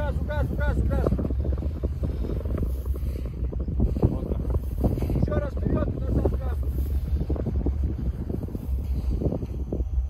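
Wind buffeting the microphone over the low drone of an SUV engine driving slowly through deep snow. Voices call out about a second in and again around five seconds.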